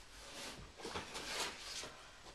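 Faint rustling and crinkling of paper and packaging being handled, in short irregular bursts.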